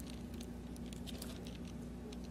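Faint rustling and light ticks of thin Bible pages being leafed through, over a steady low electrical hum.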